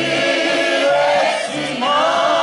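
Mixed choir of men's and women's voices singing a choral folk song, with accordion accompaniment.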